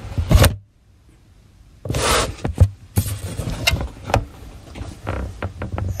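Handling noise from a handheld camera's microphone: bumps and rustling as the camera is moved, with several sharp clicks and knocks. The sound drops away almost completely for about a second just after the start.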